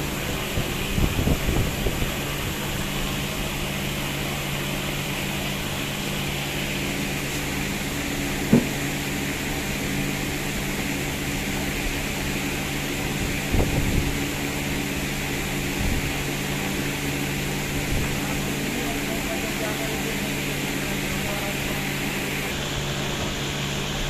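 Steady mechanical hum of a running fan-like machine, with a few brief knocks and handling noises; the sharpest knock comes about eight and a half seconds in.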